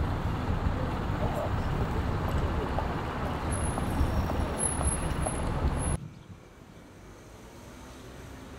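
City street traffic: a steady rumble of road vehicles with a bus approaching, with a thin, high-pitched intermittent tone over it about halfway through. About six seconds in it cuts off suddenly to a much quieter outdoor ambience.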